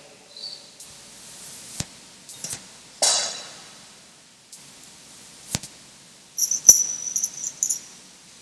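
A holy-water sprinkler knocking lightly against its metal bucket, with a short splash-like rustle about three seconds in, as the arras coins are blessed. Near the end there is a second or so of light, high metallic jingling, like small coins clinking.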